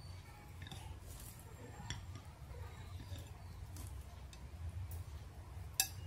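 Faint soft clicks and scrapes of a plastic knife cutting through a soft steamed cake and touching the plate, the sharpest click near the end, over a low steady hum.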